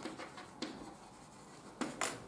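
Chalk writing on a blackboard: scratchy strokes with a few sharp taps, the loudest tap just before the end.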